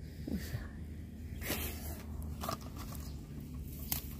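A cobra hissing inside a wire-mesh cage trap: one short hiss about a second and a half in, with a sharp click near the end.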